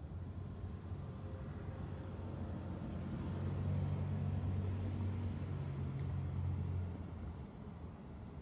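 Low engine hum of a motor vehicle that grows louder over the first few seconds, holds, then drops away about a second before the end.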